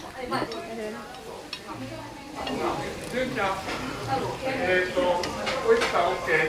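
Chopsticks and ceramic bowls clinking as wagyu sukiyaki is served into bowls at the table, with low voices in the background.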